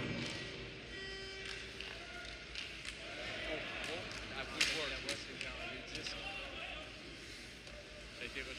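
Ice hockey arena during live play: a steady crowd murmur with skates and the sharp clacks of sticks on the puck, the loudest crack about four and a half seconds in. A few short held tones from the arena's music sound near the start.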